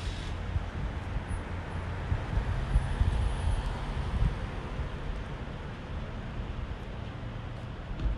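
Steady outdoor background noise: a low, uneven rumble of road traffic.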